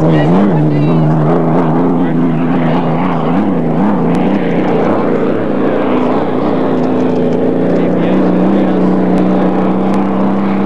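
Unlimited hydroplane racing boat running at speed: a loud, steady engine drone whose pitch wavers over the first few seconds, then holds steady and slightly higher.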